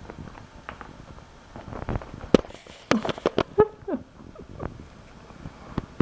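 Sharp clicks and knocks from a cat walking and pawing along a fabric couch back right at the camera, bunched in the middle, with a short falling squeak among them.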